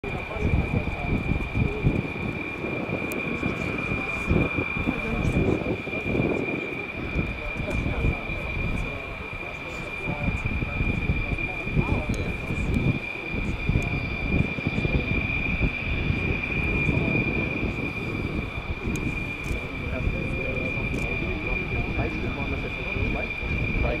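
Distant USAF F-35A's Pratt & Whitney F135 jet engine running on the runway: a steady high whine over an uneven low rumble.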